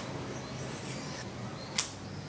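Black tape being worked around a metal bicycle handlebar: faint rustling, then one sharp snap near the end.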